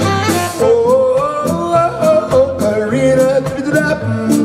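Live soul band playing, with upright bass, electric guitar, keyboard, drums and saxophones, and a sung lead line over a steady beat with regular cymbal strokes.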